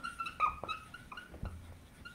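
Dry-erase marker squeaking on a whiteboard while a word is written: a run of short, faint high squeaks with a few light taps between them.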